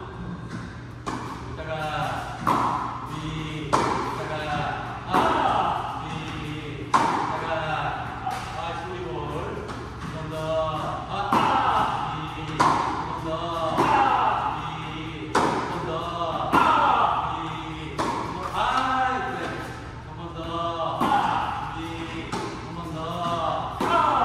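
Tennis balls struck by a racket and bouncing on an indoor hard court, a sharp hit about every second and a half with some echo from the hall, over a continuous voice underneath.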